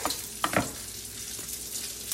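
Diced bacon sizzling in a skillet as it fries, with a brief knock about half a second in.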